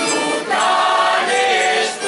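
A group of men singing a folk song together, with strummed guitars behind them; a new sung phrase comes in loudly about half a second in.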